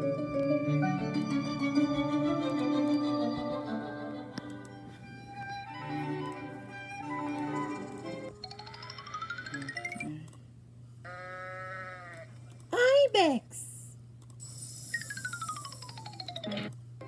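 Soundtrack of a children's video played from a screen: gentle music with bell-like notes for the first half, then a string of whistle-like sound effects gliding up and down, with a brief loud swooping tone a little past the middle.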